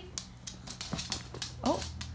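A small dog's claws clicking and scrabbling on a hard floor as it jumps at a plush toy: a string of irregular sharp clicks, followed near the end by a woman's short exclamation.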